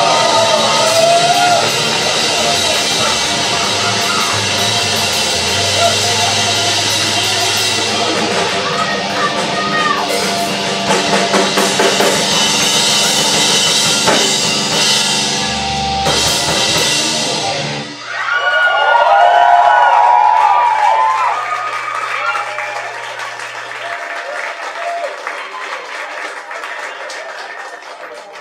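A live heavy punk/metal band playing loud, with pounding drums, distorted guitar and bass and shouted vocals, until the song stops suddenly about two-thirds of the way through. A loud wavering high tone follows for a few seconds over a held low bass note, then the ringing fades away.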